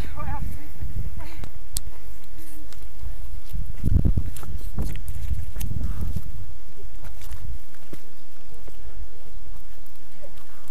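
Low rumble of wind and handling noise on a hand-held action camera's microphone, swelling to its loudest about four seconds in, with a runner's footsteps and scattered clicks on a rocky trail.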